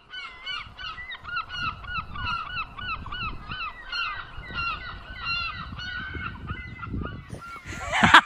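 A flock of gulls calling, many short repeated cries overlapping one another and thinning out near the end.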